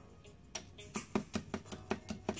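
Hard, sealed paper beads knocked together, giving a quick run of sharp clicks at about five a second that starts about half a second in. The hard clack shows the beads have set hard rather than staying soft paper.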